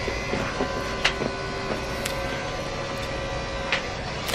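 A steady mechanical hum with faint steady tones, broken by a few soft clicks.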